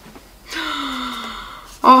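A woman's long, voiced, breathy sigh, an exasperated 'haa…' that slowly falls in pitch. It starts about half a second in and lasts about a second.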